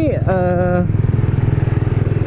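Kawasaki W175's air-cooled single-cylinder engine running steadily under way, with an even low pulse from the exhaust.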